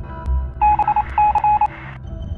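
Electronic telephone-style beeps: two quick runs of short, high tones over a thin, narrow-band hiss, as a sound effect over a low, pulsing electronic music bed.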